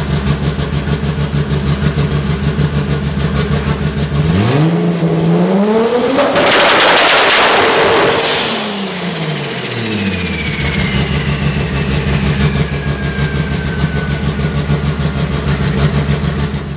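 Built Toyota 2JZ inline-six with a 74mm BorgWarner turbo, idling with a choppy, lumpy beat like a cammed-up big-block V8. About four seconds in it is revved once: the revs climb over two seconds, hold briefly and drop back to idle. A high whistle, the turbo winding down, then falls slowly in pitch.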